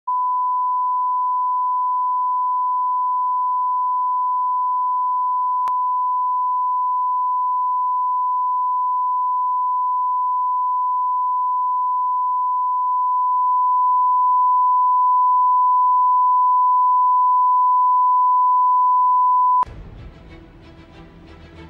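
Television line-up test tone sounding with the colour-bar test card: a single steady, pure beep at one pitch, with a faint click about six seconds in, growing slightly louder past the middle. It cuts off suddenly just before the end, where the station's ident music begins.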